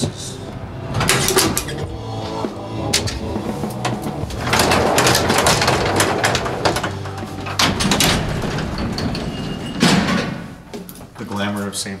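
Heavy metal doors of an old freight elevator being unlatched and opened: clicks and clanks of the latch, then a long loud metal rattle and scrape about halfway through as the gate slides, and a sharp knock near the end.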